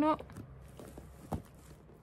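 Faint handling noises of thread and gathered fabric as a knot is tied by hand, with a few soft clicks, the clearest just over a second in.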